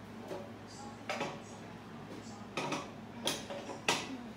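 Stovetop being wiped down with a rag: a few short rubbing and knocking sounds spaced about a second apart, the sharpest near the end, over a steady low hum.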